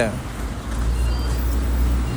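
Low, steady vehicle rumble heard inside a car, growing a little stronger about half a second in.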